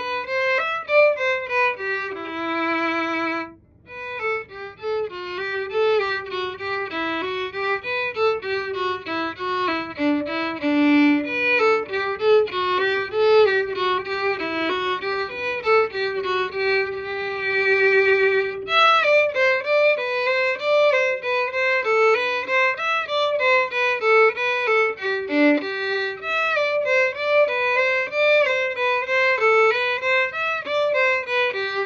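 Solo violin playing the second violin part of a minuet: a single melodic line of mostly short notes, with a few held notes and a brief break about three and a half seconds in.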